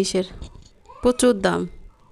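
A woman's voice: the end of a sentence, then about a second in a short, drawn-out spoken sound at the same pitch as her talk.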